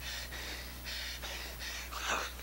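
A man gasping for breath in short, noisy breaths, about three a second, as if winded after being shot.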